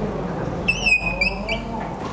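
Dry-erase marker squeaking on a whiteboard as a box is drawn around a written word: one high squeak of about half a second, then two short ones.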